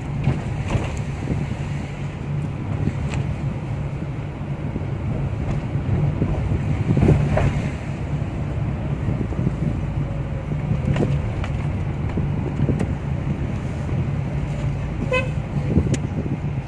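Car cabin noise while driving slowly: a steady low engine and tyre rumble with a few faint knocks. A brief high-pitched toot sounds near the end.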